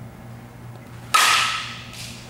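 A softball bat hits a softball about a second in: a sharp crack with a brief ring that fades away. A fainter knock follows near the end.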